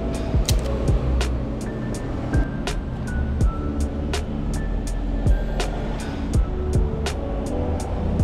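Background music with a steady beat of sharp percussive hits over held chords.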